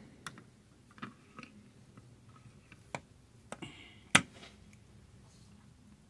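Scattered light clicks and taps of a metal scoop against a mini waffle maker as batter is dropped in and the lid is shut, with one sharper knock a little past four seconds in.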